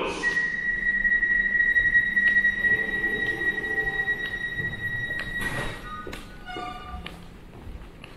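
Electronic warning tone at an underground train platform: one long, steady, high-pitched beep lasting about five seconds, a brief hiss, then a quick run of shorter, lower beeps.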